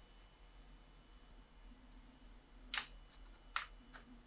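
Quiet, then a few light clicks of 3D-printed plastic charger holders being fitted onto a pegboard: one a little under three seconds in, a sharper one shortly after, and a faint one at the end.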